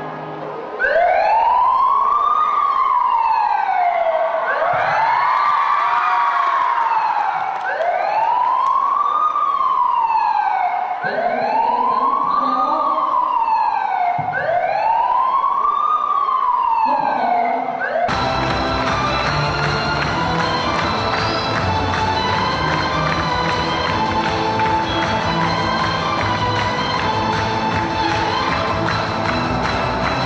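A wailing siren sound effect, its pitch rising and falling in slow cycles about three seconds apart, five times over. About two-thirds of the way through it cuts off suddenly and music takes over.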